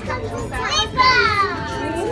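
Children's voices: high-pitched exclamations with no clear words, ending in a long drawn-out call that starts about halfway through.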